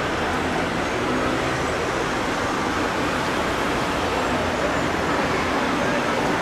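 Street traffic: cars driving through an intersection, a steady wash of engine and tyre noise.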